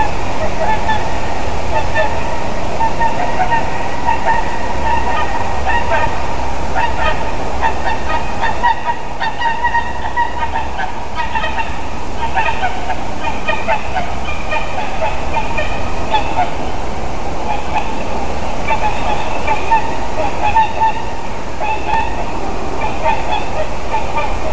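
Two swans honking, a long run of short repeated calls that overlap, easing briefly about nine seconds in before picking up again.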